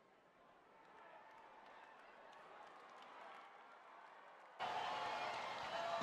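Faint racetrack crowd ambience, a low murmur that swells slightly; a little over four and a half seconds in, the background noise jumps abruptly louder and stays up.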